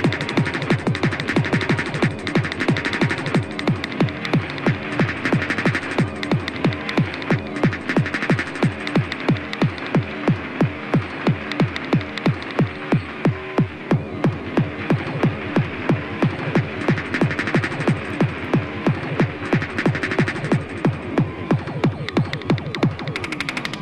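Fast free-party tekno from a sound-system DJ mixtape: a steady, pounding kick drum at roughly three beats a second with a repeating synth riff over it.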